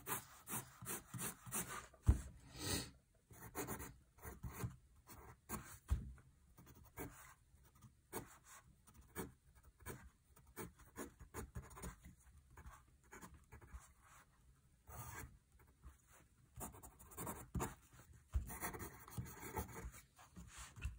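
Dixon Ticonderoga HB No. 2 graphite pencil writing on paper: short, irregular scratches and strokes as note heads and stems are drawn, with brief pauses between them and a couple of sharper taps about two and six seconds in.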